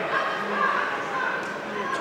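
Ringside voices at a boxing match shouting, with raised, high-pitched calls following one another in a large hall.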